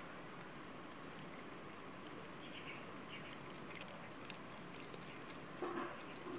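Cat eating rice and fish from a plate: a few faint, sharp chewing clicks over a steady background hiss, with a louder short noise near the end.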